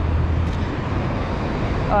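Steady low rumble of city street traffic, with no distinct single event.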